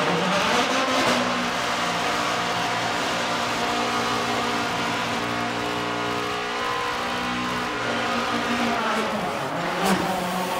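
Race car's engine held at high, fairly steady revs through a tyre-smoking burnout, with the noise of spinning tyres under it.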